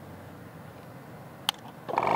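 A single sharp click of a switch on a 12-volt tire inflator's housing, about three quarters of the way through, over faint background. A louder sound begins right at the very end.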